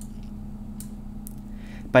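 A pause in speech filled by a steady low electrical hum, with two faint clicks about a second into the pause. A man's voice starts again at the very end.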